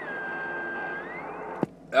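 Radio receiver hiss and static from a President HR2510 10-metre transceiver on an off-tuned signal. A thin whistle slides down in pitch, holds, then slides back up. A sharp click about one and a half seconds in cuts the noise down.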